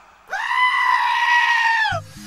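A goat bleating one long, loud cry that rises at the start, holds a steady pitch and dips as it stops.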